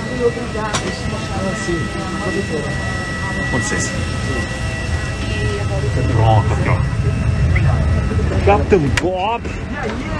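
Cabin of a parked Airbus A321: a steady low hum of the aircraft's systems with a thin high whine, swelling a little in the middle. Passengers' voices talk in the background during disembarkation, with a few light knocks.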